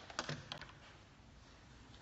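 A few quick light clicks and taps, from small objects being handled on a hard tabletop, in the first half second or so, then faint room noise.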